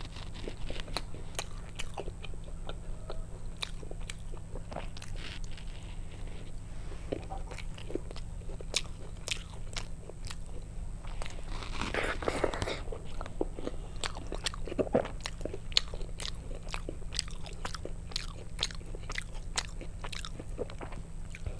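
Close-miked eating: biting and chewing of fried fritters and soft khichuri, with many short wet mouth clicks and crunches and a denser crunchy stretch about twelve seconds in. A low steady hum runs underneath.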